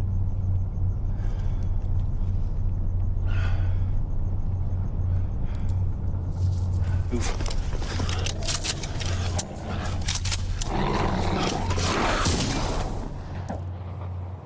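Film soundtrack: a steady low rumbling drone. From about six seconds in, a dense, irregular run of sharp cracks and snaps joins it and lasts about six seconds before fading near the end.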